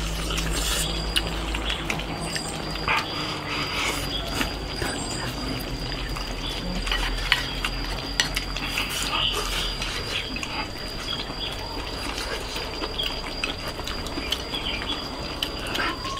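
Two people eating from bowls with chopsticks: chewing and slurping, with frequent short clicks of chopsticks against the bowls. A thin, steady high tone runs underneath from about a second in.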